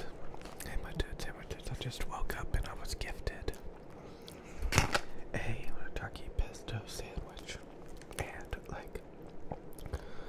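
Close-miked biting and chewing of a sandwich held in a paper sleeve: wet mouth clicks and crackles, with one louder bite or crunch a little before halfway.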